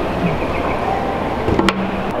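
Steady running noise of a moving escalator under mall hubbub. About one and a half seconds in comes a sharp knock as a handstand on the metal escalator steps comes down.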